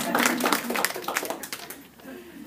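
Audience applauding in a small room, the clapping thinning out and fading away near the end.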